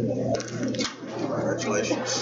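Several people talking at once in a meeting room, an indistinct murmur of conversation as hands are shaken, over a steady low hum.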